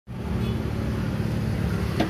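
Steady low rumble of a running motor vehicle engine.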